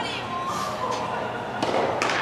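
Tennis balls struck by rackets and bouncing during a rally: three sharp pops, the loudest near the end with a short echo in the hall, over some background voices.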